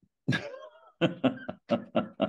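A man laughing: one drawn-out burst near the start, then a run of short, rhythmic laughs, about four a second.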